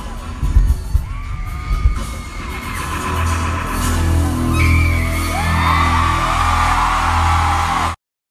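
Live arena concert sound: amplified pop music with heavy bass hits for the first couple of seconds, then a held low bass note under a crowd of fans screaming and whooping, growing louder toward the end. The sound cuts off suddenly at the end.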